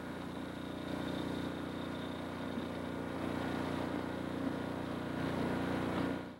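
A steady low electronic hum of several layered tones over a light hiss, fading out at the very end.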